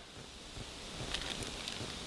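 Faint rustling and a few light clicks of cables being handled as braided sleeving is worked onto a wire, over a faint steady hiss.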